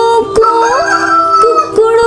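A wolf-like howl, sung or synthesized, that rises and then holds a long 'woo', over a nursery-rhyme backing track with a steady beat.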